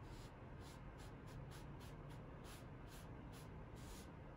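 Faint, short scratchy strokes, about three a second, of a cotton ball rubbing ground spice across a bamboo cutting board to wipe it away.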